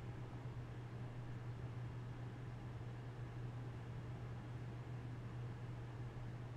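Steady low hum with faint hiss underneath: quiet room tone.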